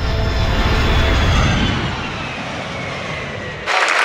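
Jet aircraft flying past: a heavy rumble with a whine that falls slowly in pitch as it goes by. It cuts off abruptly near the end, giving way to the murmur of an arena crowd.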